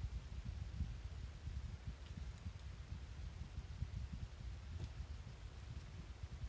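Faint low rumble of background room noise, with a couple of light clicks near the end.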